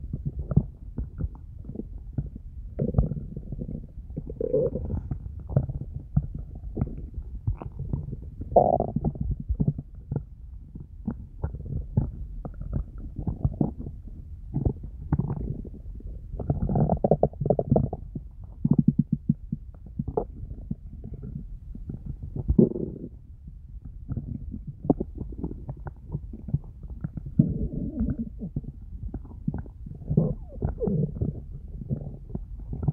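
A hungry person's stomach growling and gurgling, recorded close up: an irregular run of low rumbles and gurgles, loudest around 9, 17 and 23 seconds in. It is the sign of an empty stomach.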